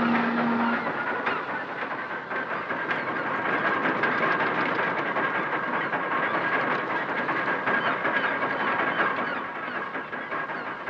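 Dockside ambience: a low, steady hooter note, likely a ship's horn, cuts off under a second in. A dense hiss like escaping steam follows, with rattling and clanking and a thin, high whistling tone over it.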